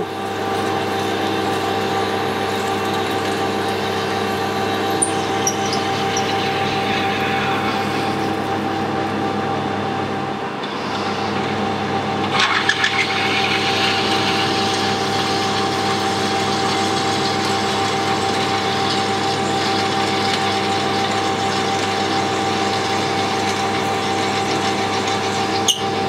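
Metal lathe running while a twist drill in the tailstock bores through a spinning aluminium spacer: a steady hum of the motor and gearing with the hiss of the drill cutting. The cutting noise eases off about ten seconds in and comes back louder a couple of seconds later.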